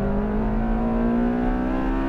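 Honda Civic Type R's K20A 2.0-litre four-cylinder engine under full-throttle acceleration, its revs climbing smoothly toward the redline in one gear, heard from inside the cabin.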